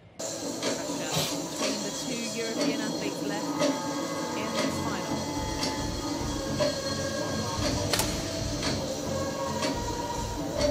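Air rifle shots on a competition range: sharp cracks at irregular intervals, the sharpest about eight seconds in. They sit over a steady hall background with indistinct voices.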